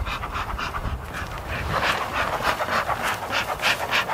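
An animal panting rapidly and steadily close to the microphone, about four to five breaths a second.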